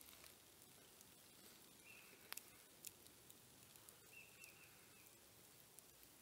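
Near silence: quiet woodland ambience with a few faint, brief high chirps from a distant bird and a couple of soft clicks.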